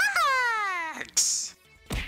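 A drawn-out cry lasting about a second, rising briefly and then falling steadily in pitch, followed by a short hiss and a thump near the end.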